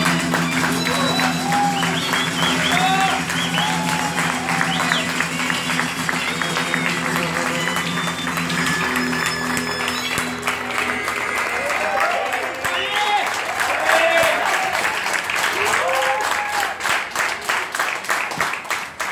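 Audience applauding and cheering at the end of a live blues number, while the band's last held note rings and fades out about ten seconds in. Near the end the applause thins into separate claps.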